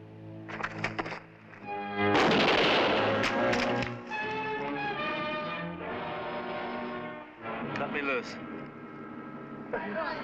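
A volley of rifles, rigged to backfire, going off about two seconds in as one loud blast followed by a couple of sharper cracks, over dramatic orchestral music with brass.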